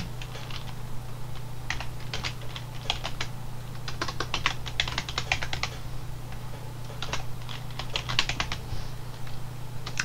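Computer keyboard typing in several short bursts of keystrokes separated by pauses, over a faint steady low hum.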